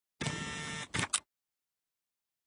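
Logo sound effect: a short mechanical buzz lasting about two-thirds of a second, then two quick sharp clicks about a second in.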